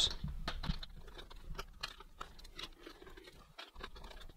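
Faint, irregular small clicks and scrapes of a hand Torx screwdriver driving T9 screws into the fan's plastic housing.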